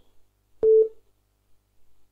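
A single short telephone beep over the call line: a click, then a steady tone lasting about a quarter of a second, a little over half a second in.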